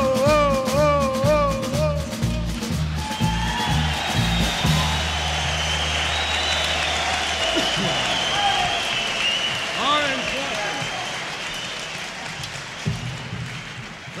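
Live country band finishing a song: a man's sung final line with a wide vibrato over a bouncing bass, then the band stops on a held low note about five seconds in. A crowd applauds and cheers over it, and the applause fades toward the end.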